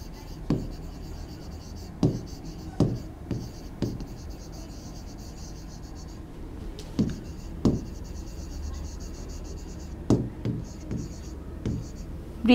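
Stylus writing on an interactive whiteboard screen: a faint, scratchy hiss of pen strokes in stretches, with about a dozen light taps scattered through it.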